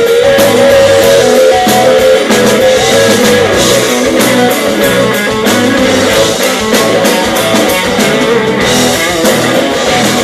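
Live blues band playing loud: an electric guitar holds long notes that waver and bend in pitch over drums and bass, with steady cymbal and drum strokes.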